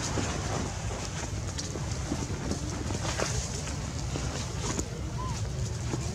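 Steady low rumble of wind on the microphone, with faint scattered clicks and one brief squeak a little past five seconds in.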